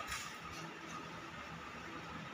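Sauce being scraped from a small steel bowl into a kadhai: a brief scrape right at the start. After it comes a faint steady hiss.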